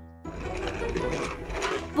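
Scene-change music in a cartoon: a held musical note fades out, then about a quarter second in a busier, noisy music-and-effects passage takes over.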